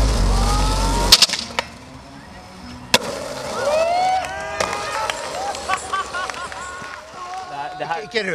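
Hip hop music cuts off about a second in. Then a skateboard rolls on an asphalt path, with a sharp clack about three seconds in, while distant voices shout over it.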